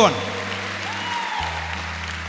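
Congregation applauding over a low, sustained keyboard chord that breaks off briefly and comes back in.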